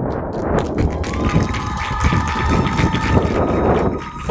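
Crowd noise from a large seated audience, with a steady high tone held for about two seconds in the middle.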